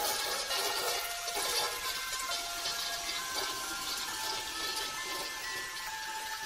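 A toilet flushing: a steady rush of water that runs through the whole stretch, with light background music over it.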